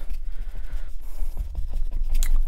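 Stiff paintbrush dabbing and scrubbing acrylic paint onto a stretched canvas: a run of short, soft scratchy strokes over a steady low hum.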